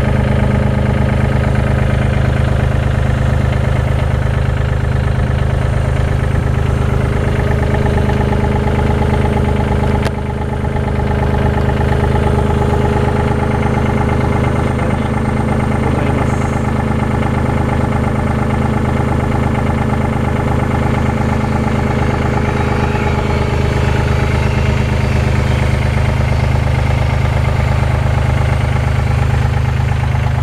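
Komatsu WA20-2E wheel loader's 1,200 cc three-cylinder 3D78AE diesel idling steadily, with a brief dip in loudness about ten seconds in.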